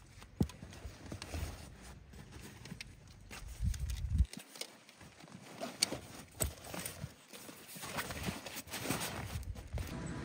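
Camera gear being packed into a padded camera backpack: scattered knocks, clicks and fabric rustles as a lens is handled and set into the bag's compartments.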